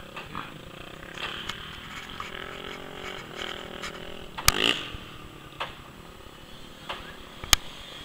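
Faint, wavering buzz of distant small engines, with two sharp clicks, one about halfway through and one near the end.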